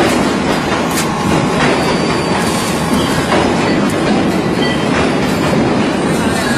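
Loud, steady mechanical rumbling noise with a few faint clicks.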